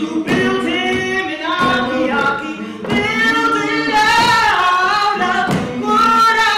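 Unaccompanied singing: a woman's voice with other voices in harmony, holding long notes that slide in pitch.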